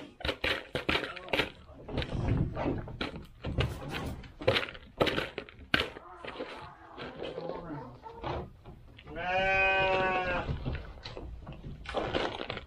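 Turkeys pecking dry treats out of a plastic bowl, a rapid run of sharp irregular clicks and taps. About nine seconds in, a goat bleats once, a steady-pitched call lasting about a second and a half.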